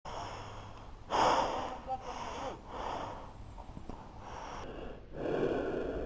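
A person breathing heavily close to the microphone: several loud, uneven breaths, the strongest about a second in.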